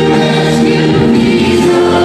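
Live worship band performing a song, with women's voices singing over bass guitar, keyboard and guitar.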